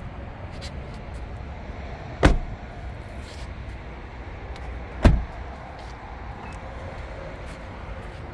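Two car doors of a 2020 Mazda CX-5 shutting, about three seconds apart: the rear door and then the driver's front door, each a single solid slam.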